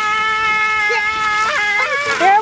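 A child's voice in one long, high-pitched whine or squeal, held at a nearly constant pitch.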